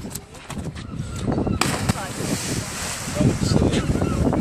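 A person jumping off a pier into harbour water: a sudden splash about a second and a half in, followed by the hiss of spray and churned water settling. Voices of onlookers can be heard throughout.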